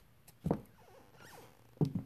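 High heels striking a hardwood floor, two steps about half a second in and near the end. Between them the floorboards give a thin, wavering squeak.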